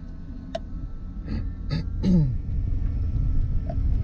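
Cammed 2006 GMC pickup's engine heard from inside the cab, a steady low rumble that grows louder about two seconds in as the truck pulls away. Brief throat and breath noises from the driver cut in around the middle.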